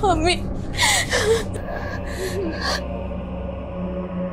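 A girl crying: broken, wavering sobs with sharp gasping breaths.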